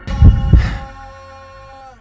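Two deep thumps in quick succession, a double beat like a heartbeat, over the edit's music. The music's last held note fades out and then cuts off.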